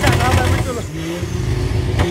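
A vehicle engine running steadily at a drag strip, a low rumble with a held tone, under a man's voice and laughter that fade out about a second in.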